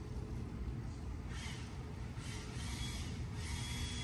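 A steady, annoying low mechanical rumble in the background, with faint swells of hiss above it.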